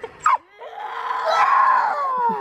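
A young girl's long, loud scream, trying to roar like a dragon, building in loudness over about a second and a half. A short sharp call comes just before it.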